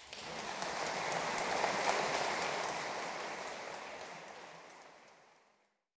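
Audience applauding. The clapping swells over the first two seconds, then dies away gradually and cuts off shortly before the end.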